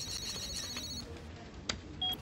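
Electronic telephone ringing with a rapid high-pitched warble that stops about halfway through, followed by a single short click near the end.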